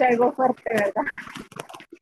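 A person talking: unbroken speech, with no other sound standing out.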